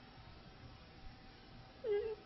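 Near-silent room tone during a pause in speech. Near the end comes one brief high-pitched squeak that dips slightly in pitch and then holds.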